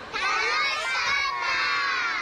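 A group of young children shouting together in unison, one long drawn-out 「楽しかったー！」 ("That was fun!"), their many high voices overlapping.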